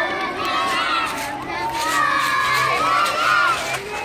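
A group of young children shouting and cheering together, many high voices overlapping, with a brief dip just before the end.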